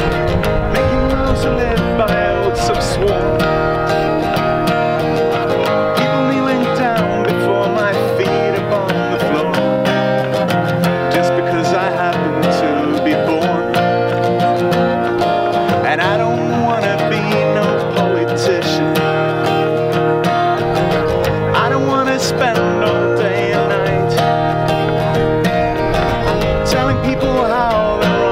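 Acoustic guitar played live, a continuous run of chords and plucked notes as the opening of a song.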